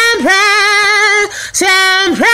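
A woman singing unaccompanied, holding long notes at one steady pitch with brief downward slides and short breaks between them.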